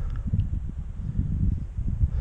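Uneven low rumble of wind buffeting the microphone, with a few faint clicks.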